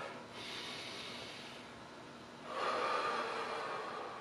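A man's deep breathing during slow squats: a soft, drawn-out breath, then a louder breath starting about two and a half seconds in.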